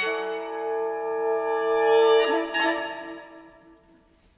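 Orchestral brass playing a sustained chord that swells for about two seconds, shifts to new notes, then fades away to near silence near the end.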